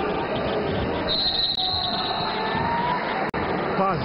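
Sports-hall crowd noise during a basketball game, with a referee's whistle blown once for about a second, starting about a second in.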